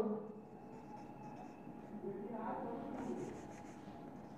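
Marker pen writing on a whiteboard, faint scratching strokes about a second in and again around three seconds, with a quiet murmured voice in between.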